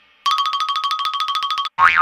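A rapid electronic tone pulsing about a dozen times a second, like a trill, for about a second and a half, used as a sound effect in a rock song's break. It cuts off, and near the end a loud wavering high sound and a low band note come in.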